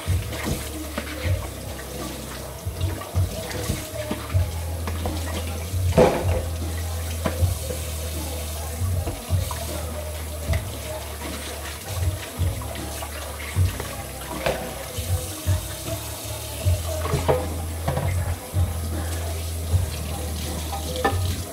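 Tap water running into a kitchen sink while dishes are washed by hand, with frequent irregular clinks and knocks of crockery and utensils, over background music.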